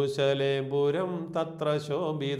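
A man singing a line of a Malayalam Christian hymn solo, in a slow chant-like melody with long held notes and short breaks between phrases.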